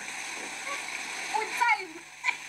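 Water splashing and running steadily, with a brief voice sound near the end.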